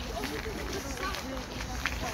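Indistinct chatter of several people's voices, overlapping, over a low steady rumble.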